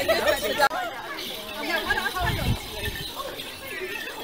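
Several people chattering at once as a group walks along, over a steady hiss.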